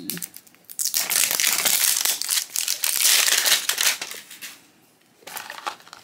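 Thin plastic wrapper crinkling and crackling as it is peeled and torn off a plastic blind-box toy capsule. The crackling runs densely for about three seconds, stops briefly, then returns in a few crackles near the end.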